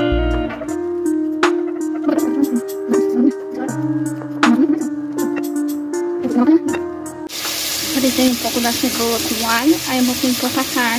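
Guitar background music for about seven seconds, then a sudden cut to meat sizzling as it browns in a cooking pot.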